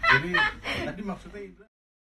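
A woman laughing in short bursts, fading, then cut off suddenly about one and a half seconds in.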